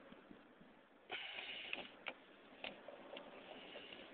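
Faint handling noise from plastic pocket water-quality meters and their case: a short rustle about a second in, then three sharp clicks about half a second apart.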